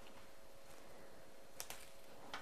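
Faint handling of cut foliage stems, with a couple of small clicks about one and a half seconds in against quiet room tone.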